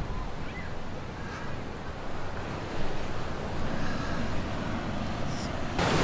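Ocean surf washing on a sandy beach, a steady wash of breaking waves that swells a little about halfway through, with wind on the microphone.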